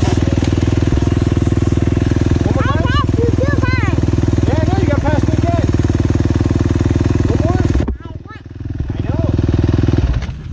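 Dirt bike engine running steadily close by, with a fast even pulse. Near the end it drops away suddenly for about a second, then comes back up. Voices are heard over it at times.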